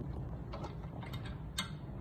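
Faint clicks and taps of a monitor's metal mounting bracket being fitted onto the clamp of its support arm, with one sharper click about one and a half seconds in.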